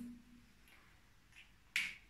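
A single short, sharp click near the end of a quiet stretch, the snap of a whiteboard marker's cap being pushed on; a fainter tick comes shortly before it.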